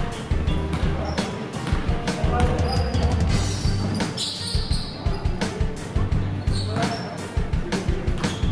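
Basketball bounced repeatedly on a hardwood gym floor during dribbling, a series of sharp bounces, over background music with a steady low beat.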